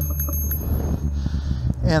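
A short, high, metallic ringing broken by several quick ticks during the first half second, over a steady low rumble from the recumbent trike rolling along the paved path.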